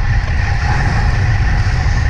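Strong wind buffeting the microphone of a road bike ridden at about 45 km/h: a loud, steady low rumble.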